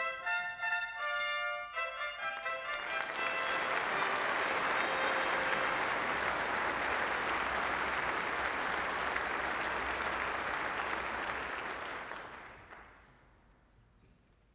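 A brass fanfare ends in the first two or three seconds, then an audience applauds steadily for about ten seconds before the applause dies away near the end.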